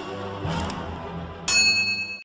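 Logo intro sound effect: a low synthesized music bed, then a sudden bright bell-like ding about a second and a half in that rings on until it is cut off abruptly.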